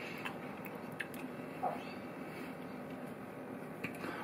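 Quiet chewing of a soft mouthful of stuffed vine leaf: a few faint mouth clicks over room tone.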